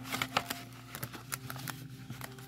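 Paper and card stock handled on a desk: sticker sheets and envelopes shuffled and tapped, giving a quick series of light clicks and rustles.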